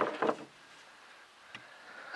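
A brief knock and rustle right at the start, then near silence with faint outdoor background and one faint click about one and a half seconds in.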